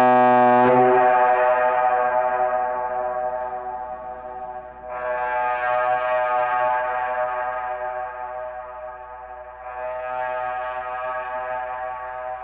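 The Royal Yacht Britannia's whistle: a loud blast of several pitches at once that cuts off about half a second in and keeps ringing. It then comes back twice as echoes off the Saguenay fjord's rock walls, about 5 and 10 seconds in, each fainter than the last.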